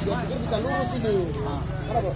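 Many voices of a crowd shouting and talking over one another at once.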